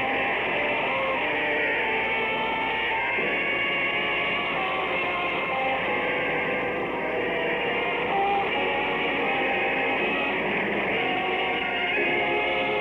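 Orchestral music bridge of sustained chords, with a change of chord about three seconds in and again near the end, heard through a narrow-band old radio recording.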